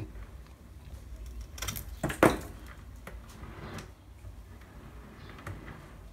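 Hand pruners snipping through a branch of a succulent dwarf jade, one sharp click about two seconds in, followed by a few fainter clicks.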